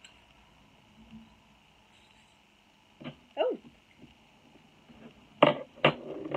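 Two sharp clinks about half a second apart near the end, metal drinking straws knocking together inside a small cloth pouch as it is handled and opened. Before them there is only quiet handling.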